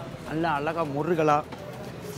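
A man's voice in two short phrases with rising and falling pitch, over low background noise.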